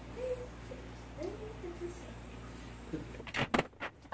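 Steady low hum with a few faint, brief wisps of distant voice, then a handful of sharp knocks near the end as things are handled on a kitchen counter.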